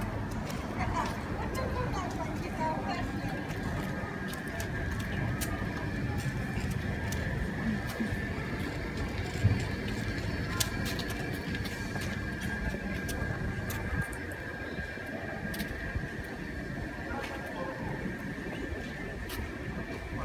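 Outdoor street ambience: a steady low rumble with faint voices in the background and a faint, steady high-pitched whine from a couple of seconds in.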